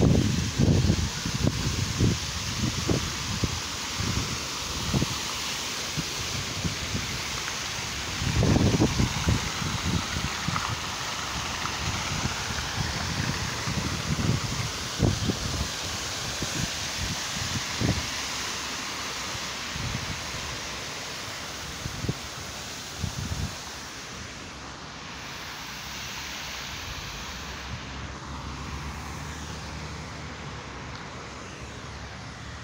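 Fountain jets spraying and splashing into a basin, a steady rushing hiss, with irregular low rumbles of wind buffeting the phone's microphone. The hiss eases near the end.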